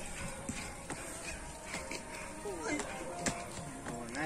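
Faint voices over steady outdoor background noise, with a few light taps.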